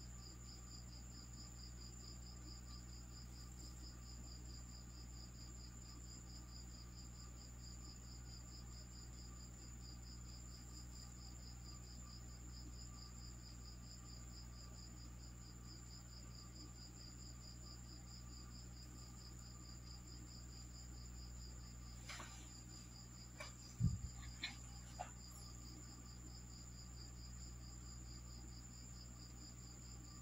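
Faint, steady, high-pitched trilling of crickets over a low hum. A few sharp clicks and one thump come in a short cluster about three-quarters of the way through, from a lever-arm guillotine paper cutter being worked.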